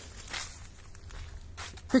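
A few footsteps on dry leaf litter outdoors.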